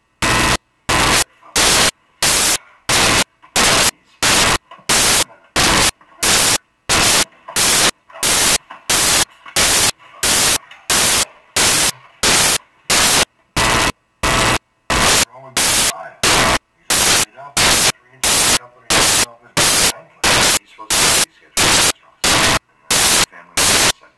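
Loud bursts of static hiss repeating evenly about twice a second, chopping up faint dialogue between them: a badly corrupted audio track.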